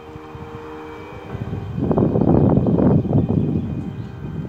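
Wind buffeting the microphone outdoors: a low rushing noise swells about a second and a half in, holds loud, then eases off near the end, over a faint steady tone.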